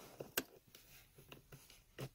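Faint plastic clicks and ticks as a round 12-volt power-outlet part is handled and fitted at a car's center console: two sharper clicks in the first half second, then a few lighter ticks.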